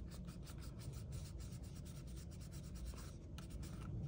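Faint paper crinkling and rubbing from fingers holding and pressing a glued, rolled paper rose center onto cardstock petals, a quick run of small ticks several times a second.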